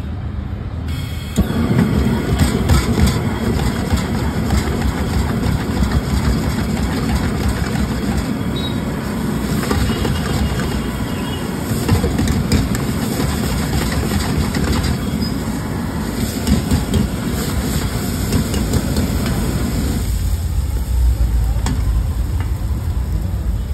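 Rice frying in a steel wok over a gas burner: steady sizzling and burner noise, with a metal ladle scraping and clinking against the pan. The sound jumps louder about a second in, and a deeper rumble comes in for the last couple of seconds.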